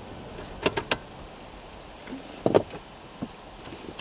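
Handling noises inside a car: a quick run of three sharp clicks a little over half a second in, then a louder thump about two and a half seconds in and a lighter knock after it.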